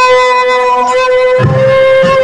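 Live band music with one high note held steady over the band. The bass and drums drop out and come back in about one and a half seconds in.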